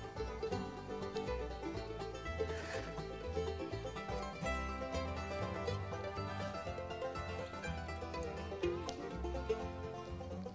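Instrumental background music: a light plucked-string tune over a repeating bass line.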